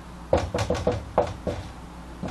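Felt-tip marker tapping on a whiteboard: a quick run of about seven sharp taps from about a third of a second in to about a second and a half, as dots are struck onto the board, then a few fainter taps.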